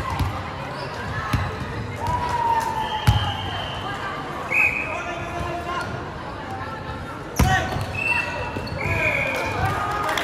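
Volleyball thudding on a hardwood sports-hall floor twice, about three and seven seconds in, over the chatter of players and spectators echoing in the hall. Several short high squeaks come between the thuds.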